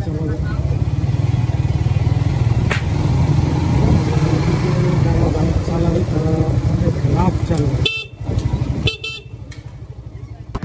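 Suzuki GSX-R150 single-cylinder engine running in low gear on the move. Near the end the engine note drops away and two short horn honks sound about a second apart.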